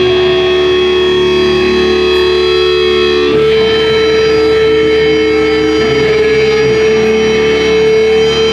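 Distorted electric guitar ringing in long held notes through an amplifier, the pitch changing once about three seconds in, with no drumming.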